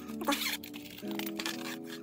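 Soft background music with steady held notes, over a short rasping noise in the first half-second as the zippered scissor case is unzipped and opened.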